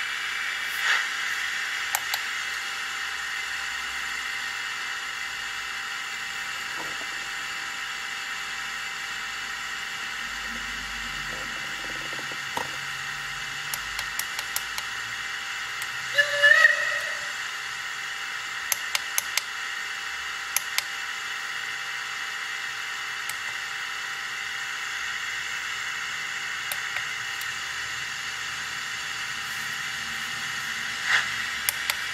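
Model steam locomotive's DCC sound decoder playing a steady steam hiss through its small onboard speaker while the locomotive stands still. About halfway through there is a short whistle, and there are a few light clicks around it.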